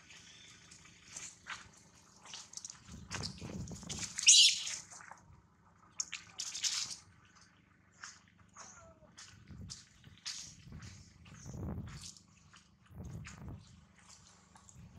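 Irregular crunching and scuffing on dry leaf litter, a short brief sound every second or so, with a single brief shrill sound about four seconds in that is the loudest thing heard.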